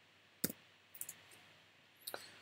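Computer keyboard keystrokes: one sharp key click about half a second in, then two or three fainter clicks around the one-second mark.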